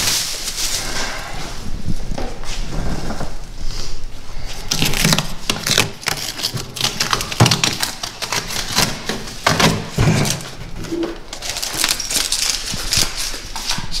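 Clear plastic wrapping rustling and crinkling in a continuous irregular crackle as it is pulled off and pushed around a carpeted storage box.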